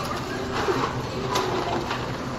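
Store checkout ambience: light clatter and rustle of groceries and carts being handled, with faint background voices.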